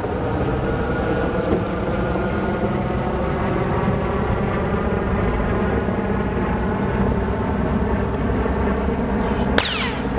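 Steady engine drone with a deep low hum, running evenly throughout. Near the end a sharp click is followed by a brief high-pitched falling sweep.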